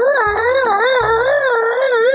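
A person's high voice imitating a dog's whine, one long, wavering whimper that goes on for about two seconds. It voices a toy dog refusing to play fetch.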